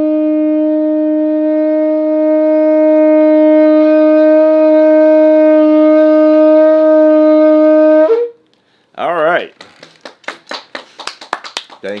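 Shofar sounding one long, loud blast on a single steady note rich in overtones, which breaks upward briefly as it ends about eight seconds in. After a short pause, hands clap repeatedly near the end.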